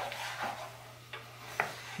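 Wooden spoon stirring a reducing cream sauce in a skillet, with three light knocks of the spoon against the pan over a faint simmering sizzle.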